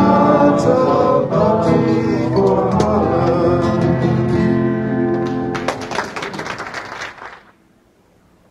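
Live acoustic guitar and voice playing the final bars of a song. Audience applause breaks out about six seconds in and is quickly faded out.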